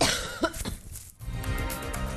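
TV programme bumper: a sudden whoosh sound effect with a short falling tone, a brief gap, then theme music with a steady beat starting just over a second in.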